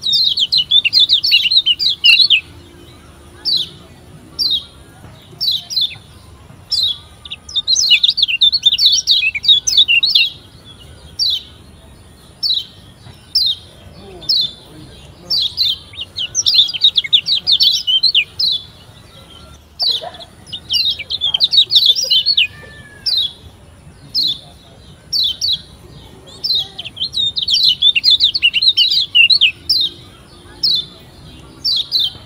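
Kecial kuning (Lombok yellow white-eye, a Zosterops) singing: rapid, high chattering trills of about two seconds each, every five or six seconds, with single sharp chirps between them.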